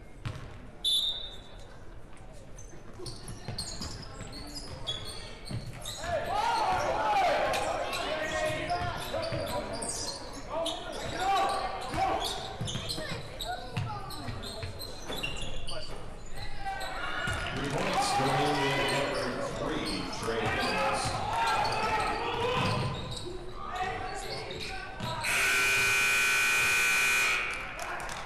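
Basketball game noise in a large echoing gym: a ball bouncing, shoes squeaking and players and spectators calling out. Near the end a loud gym horn sounds one steady blast of about two seconds.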